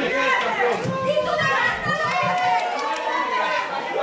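Many voices shouting and chattering at once from a wrestling crowd, with high-pitched children's voices among them.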